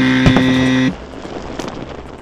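An electronic buzzer-like sound effect: one steady tone, just under a second long, that cuts off suddenly, followed by quiet background noise.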